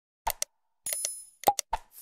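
Button sound effects of an animated like-subscribe-bell end screen: two quick mouse-style clicks, a short bell ring about a second in, then three more quick clicks.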